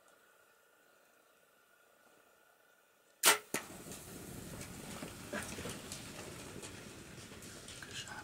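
A bow shot about three seconds in: one sharp, loud crack with a second click just after. Blue wildebeest then run off over dry ground, their hooves scuffling steadily.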